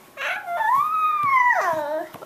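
A toddler imitating an elephant's trumpet with her voice: a short breathy burst, then one long high-pitched call that rises and falls back.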